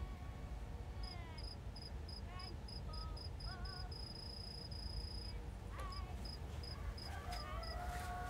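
Cricket chirping at night: short high chirps about three a second, which run together into one continuous trill for about a second midway, over a low steady background hum.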